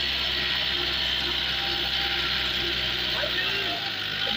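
YTO 604 tractor's four-cylinder diesel engine running steadily under load while pulling a tillage implement through the soil, with an even mechanical hiss over the low engine note.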